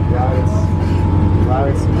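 2013 Scion FR-S's flat-four engine idling steadily through its DC Sports exhaust, a low, even rumble.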